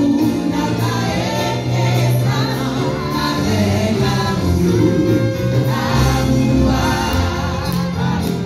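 A church congregation singing a gospel hymn in Haitian Creole, with many voices together over instrumental backing that holds steady low bass notes.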